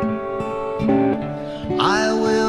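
Acoustic guitar strumming sustained chords in a slow country ballad, played back from a live performance recording. A singing voice comes in near the end.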